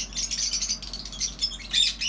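Many caged small parrots, lovebirds among them, chirping and squawking together in an aviary: a dense chatter of short, high, overlapping calls.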